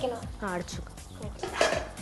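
A spoon stirring chicken pieces in a metal saucepan, knocking and scraping against the pot, with a longer scrape about one and a half seconds in. Background music and a voice run underneath.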